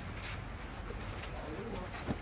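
A bird cooing, a short wavering low call in the second half, over a steady low rumble.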